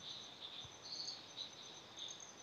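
Faint background: a high-pitched chirring that pulses on and off over low room hiss.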